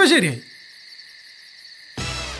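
A steady night chorus of crickets, a high insect drone. It opens with a short, loud falling call, like a hoot, in the first half second.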